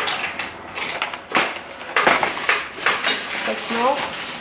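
Rustling and clattering of packaging as boxed items are put down and a shopping bag is rummaged through, with irregular knocks and crinkles.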